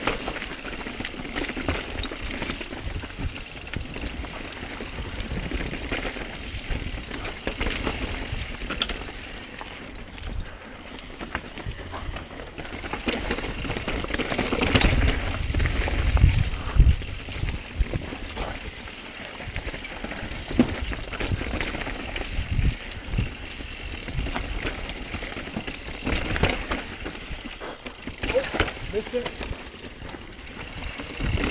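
Mountain bike riding down a rough trail: the bike rattling and knocking over roots and rocks, with tyre noise and a constant low rumble, heaviest about halfway through.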